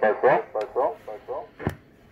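A voice coming through the RCI 69FFB4 CB radio's echo effect: the spoken words repeat several times, each repeat quieter, fading out. A single sharp click follows near the end.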